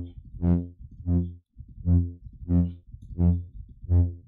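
Brass-style synth lead from the Vital software synthesizer: a 16-voice unison saw wave through a Band Spread Flange+ comb filter. It plays the same low note again and again, about six short notes in four seconds. Each note swells brighter and then fades, while the filter resonance is nudged up.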